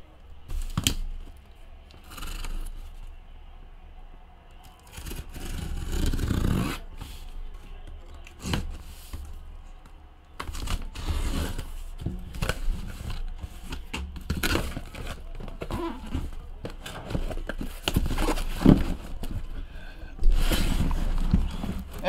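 A cardboard shipping case of trading-card hobby boxes being cut and opened by hand, with irregular scrapes, tearing of tape and cardboard, and sharp knocks as the flaps and boxes are handled.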